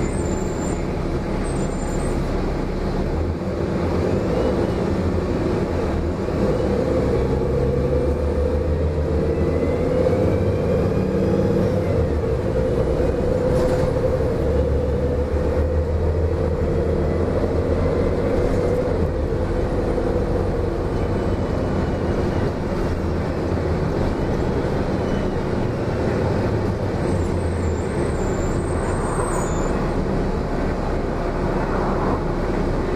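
A 30-foot 2004 Gillig Low Floor transit bus driving along, heard from inside the passenger cabin: a steady engine and drivetrain rumble with road noise. A steady whine joins about six seconds in and fades out around twenty seconds.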